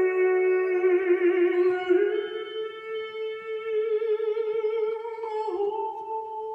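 A man singing long sustained notes with vibrato, live, over a soft held orchestral chord; the sung pitch steps up about two seconds in and dips again near the end.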